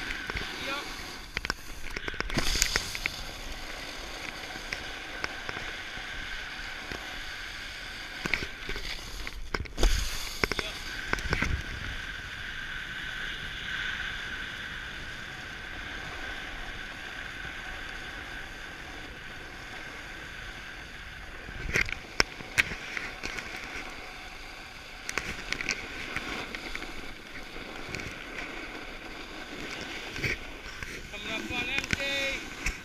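Skiing or snowboarding down groomed packed snow: a steady hiss of edges sliding and carving over the corduroy, with wind on the camera microphone. Several sharp scrapes or knocks break through, the loudest about ten seconds in and again a little after twenty seconds.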